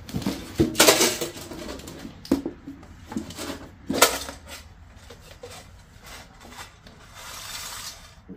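A round metal tin being handled and opened: sharp clacks and rattles of the tin and of the small metal jewellery pieces inside, the loudest clack about four seconds in, with rustling of cardboard and paper between.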